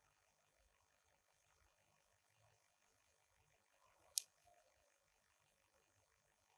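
Near silence, broken about four seconds in by one short, sharp high click from a matchbox and match being handled while trying to light a match.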